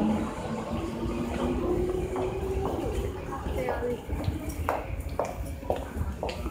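Train platform sounds: a steady hum at one pitch from a train for the first few seconds, fading out, then a series of short sharp clicks or taps.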